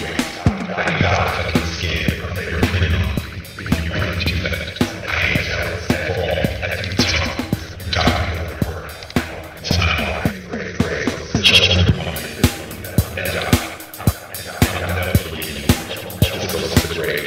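Music mashup: an 80s-disco drum-machine beat at 110 beats per minute, its hits evenly spaced, with a wordless, wavering vocal track laid over it.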